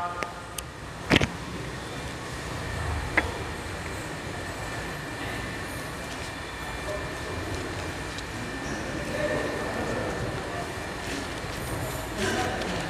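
Steady background rumble and hiss of an open hall, with one sharp knock about a second in and a smaller click about three seconds in.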